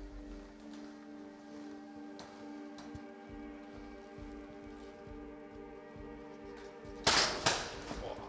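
A steady, droning background music bed, broken near the end by two loud gunshots about half a second apart, each ringing briefly after.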